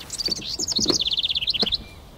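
A songbird singing one phrase: a fast run of high notes that falls in pitch into a rapid trill and ends with a few higher notes. A few soft low knocks sound underneath.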